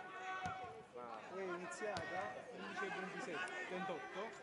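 Faint overlapping shouts and calls from several voices on a football pitch during play, with a couple of short knocks about half a second and two seconds in.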